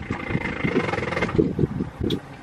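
Wind buffeting the microphone on an open pontoon boat under way: an uneven, gusty rumble, with a faint high whine in the first second or so.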